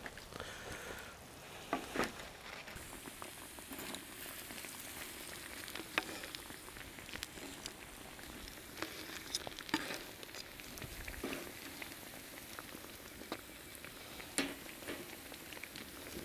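Food sizzling steadily on a grill and in a frying pan over a wood fire, with scattered short clicks of metal tongs and knocks against a wooden board.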